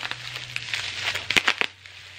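Clear plastic bag crinkling as it is handled, with a quick cluster of sharp crackles about one and a half seconds in.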